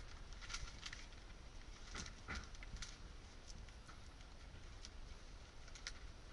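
Quiet outdoor background: a steady low rumble with a few faint, scattered clicks and taps.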